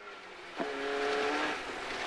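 Rally car at speed on a snow-covered stage, heard from inside the cabin: the engine runs under load as the car gathers speed, over a rushing noise of tyres on the snow that swells about half a second in.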